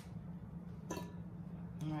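Steady low hum with a single sharp click about halfway through; a woman starts speaking at the very end. There is no grating in between.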